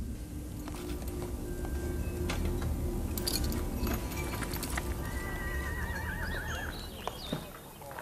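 A horse whinnies once about five seconds in, a wavering, trilling call, over background music with scattered hoof-like clicks.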